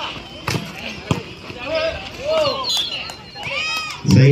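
A volleyball struck hard twice, about half a second and a second in, as it is spiked and played at the net, with voices shouting during the rally.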